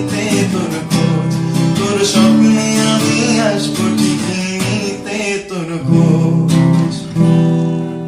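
Yamaha cutaway acoustic guitar strummed in steady chords while a man sings along in Bengali. About seven seconds in, a last chord is struck and left to ring out.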